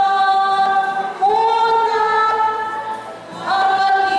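A group of women singing together in unison, holding long notes. A new phrase starts about a second in and another near the end, after a short dip.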